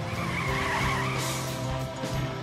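Car tyres squealing for about a second as a car speeds off, a wavering high squeal starting about half a second in, over background music.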